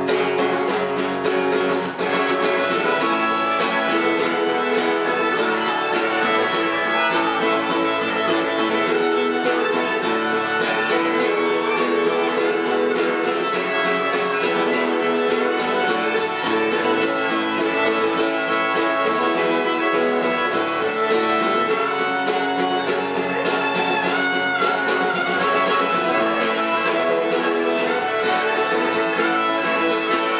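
Fiddle playing a fast instrumental break over a strummed acoustic guitar in a live country duo, with no singing.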